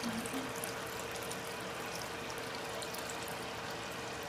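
Ocean water pouring steadily from a plastic gallon jug into a plastic tub of hot lye solution, splashing and bubbling into the liquid.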